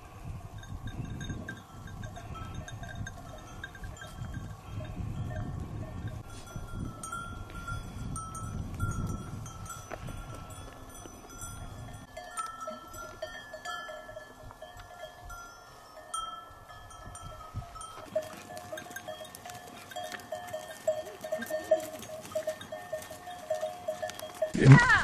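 Many metal livestock bells on a moving herd of goats ringing and clinking unevenly, several bells at different pitches at once. A low rumble runs under the first half.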